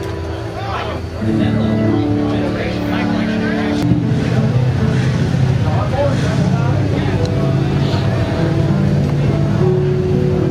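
Pickup truck engine revving hard under load while driving through deep mud. The engine note steps up about a second in and again about four seconds in, then holds high.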